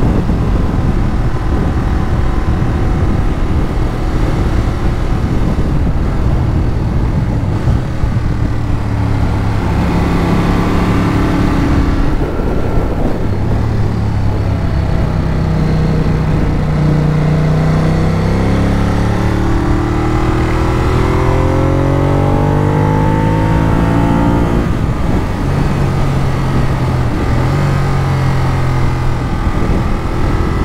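Ducati Monster 821's L-twin engine running under way on the road, with wind noise over the microphone. About two-thirds of the way through, the engine note climbs steadily as the bike accelerates, then drops suddenly as the throttle closes, and settles to a steady note.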